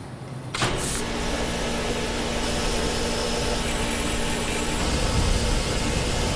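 High-power electric discharge coaxial laser switching on and running. A loud, steady rushing noise with a low hum starts suddenly about half a second in, with a brief sharp hiss at its start.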